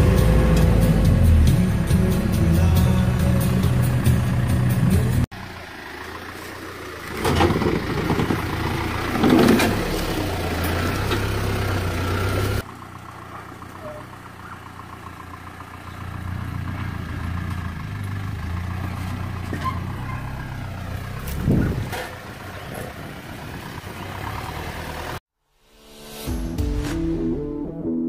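Four-wheel-drive engine and road noise inside the cab on a sandy track. After a cut it turns to a 4WD engine working up a rutted dirt track, heard from outside, with two louder surges of engine. The sound drops again at a later cut and stops suddenly near the end.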